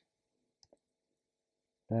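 Two faint, quick clicks of a computer mouse a little over half a second in, close together like a double-click, against near silence.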